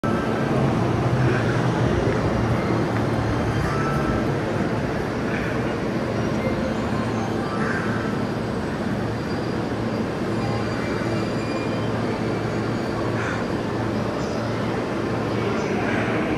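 Steady hum and rumble of a railway station platform, with electric commuter trains standing alongside. Faint short higher sounds come and go every few seconds over it.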